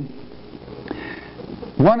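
A man's sniff, breath drawn in through the nose, in a pause between sentences, with a faint click about a second in; his speech picks up again near the end.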